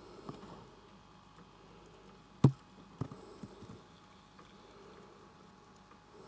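Faint room tone broken by one sharp knock about midway, then a few softer knocks and clicks.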